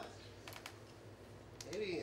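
Quiet room tone broken by a few faint short clicks, then a man's voice starts near the end.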